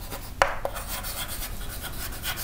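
Chalk writing on a chalkboard: scratchy, rasping strokes, with two sharp taps of the chalk striking the board about half a second in.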